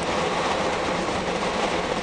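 Steady road and engine noise heard from inside a moving coach.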